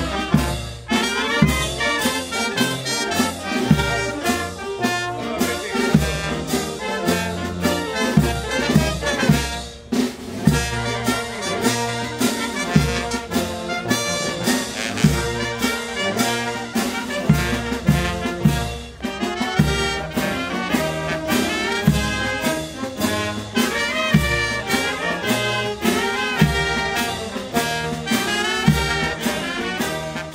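Brass band playing, with a steady drum beat and bass notes under the brass melody.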